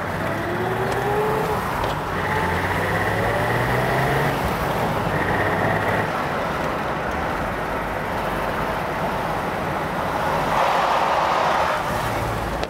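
A BMW E21 323i's fuel-injected straight-six engine pulling as the open-topped car drives along, with wind and road noise. The engine note rises over the first few seconds and then holds steady, and a louder rush of noise swells near the end.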